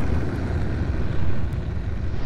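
Deep, steady rumble trailing a boom sound effect, slowly fading.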